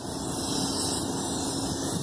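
Passing vehicle noise: a steady rushing that swells slowly, over a faint steady hum.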